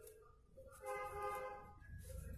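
A faint horn sounds once, a steady tone of several pitches held for about a second, over a low rumble.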